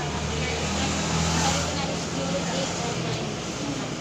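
A motor vehicle's engine running close by at the roadside, a steady low hum that swells about a second and a half in and eases off after two seconds, over general street noise.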